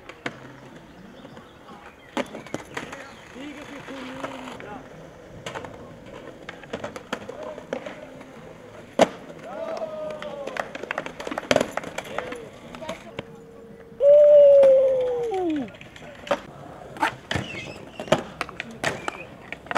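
Skateboards on concrete: wheels rolling, repeated sharp clacks of tails popping and boards landing, and trucks grinding along concrete ledges and a curb. A loud drawn-out sound, falling in pitch, stands out about fourteen seconds in.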